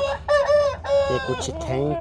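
A rooster crowing once, a held call lasting about the first second.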